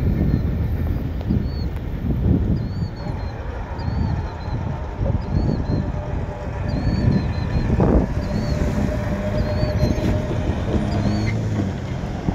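Wind buffeting the microphone in uneven gusts, with a faint high chirp repeating about once a second and a brief steady hum in the last few seconds.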